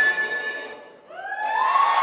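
The dance music's last held chord fades out about halfway through, and right after it an audience breaks into applause and cheering that swells quickly.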